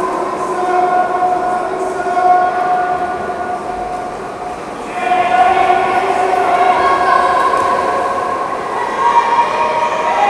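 Long, steady horn tones at several pitches, overlapping and held for seconds at a time, dipping briefly about four seconds in and swelling again at five.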